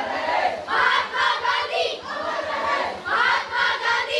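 Group of schoolgirls chanting slogans together while marching, in short rhythmic phrases repeated about once a second.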